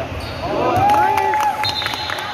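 Basketball game sounds in a gym: sneakers squeaking on the court floor in a flurry of short squeals and one longer held squeal about a second in, with a series of sharp knocks of the ball bouncing through the second half.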